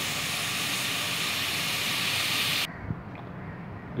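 Onion-and-tomato masala sizzling in oil in an aluminium pot, a steady hiss that cuts off suddenly about two-thirds of the way through, leaving a much quieter background with a faint click.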